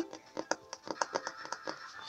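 Rapid, irregular light clicking, roughly eight to ten ticks a second, from a small hamster's claws on a tiled floor as it scurries about.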